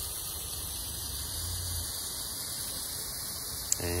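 Steady background hiss with a low hum underneath, and one sharp click shortly before the end.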